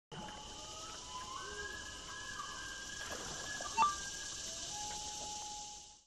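Quiet ambient soundtrack of an animated intro: a steady high hiss with faint held and gently gliding tones, and one short click about four seconds in.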